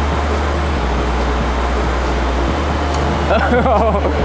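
Steady whir of electric RC aircraft motors and propellers in flight, with a low hum under it. A short laugh comes in near the end.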